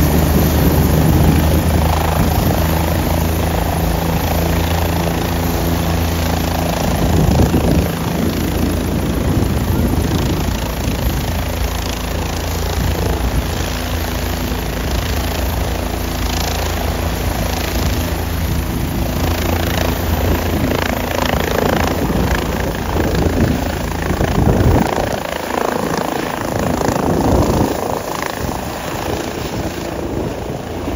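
Light helicopter running close by, its rotor and turbine making a steady, loud sound. The deep low end thins out near the end.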